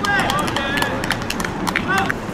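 Players' voices calling out across an outdoor football court, with scattered sharp taps and knocks in between.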